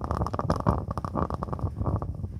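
Candle flame recorded at very close range by clip-on microphones: a dense, low rumbling flutter with irregular crackles throughout.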